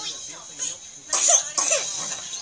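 Two coughs, a little under half a second apart, starting about a second in: a flu cough.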